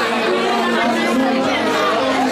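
Crowd chatter: many people talking at once, with music in the background.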